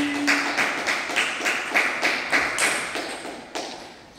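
Table tennis rally: the plastic ball clicks in quick succession off the bats and the table, about three hits a second, with the echo of a large hall. The hits fade near the end.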